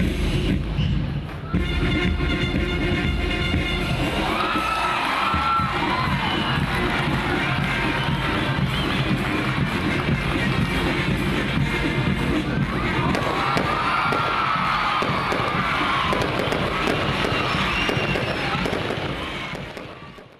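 Massed military marching band of brass, sousaphones and drums playing, with a held brass chord early on, over a crowd cheering and shouting; the sound fades out near the end.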